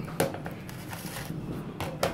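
Beer being poured from a glass bottle into a glass, fizzing and foaming, with a sharp click just after the start and another near the end.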